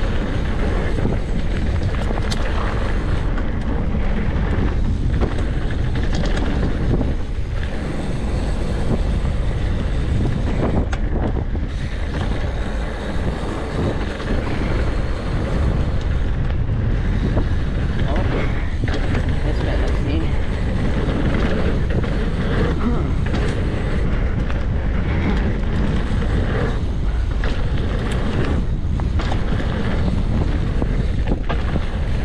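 Wind rushing over a bike-mounted camera microphone as a mountain bike rolls along a dirt trail, with tyre noise and scattered knocks from bumps.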